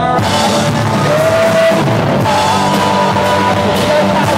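Live punk rock band playing: the full band of electric guitar, bass guitar and drum kit comes in at the start after a quieter passage, with a held melody line sounding above it.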